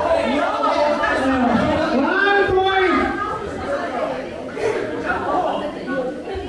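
Several people talking at once in a large hall, with chatter but no clear single speaker.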